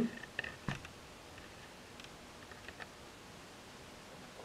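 Quiet room with a few light clicks and faint rustles as cotton fabric squares are handled, the sharpest click a little under a second in.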